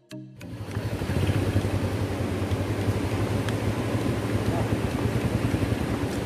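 Motorcycle engine running steadily, coming in just after a brief silent gap at the start.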